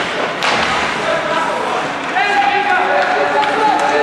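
Ice hockey game sounds in an arena: a sharp knock about half a second in, then players shouting from about halfway through, over the general noise of play.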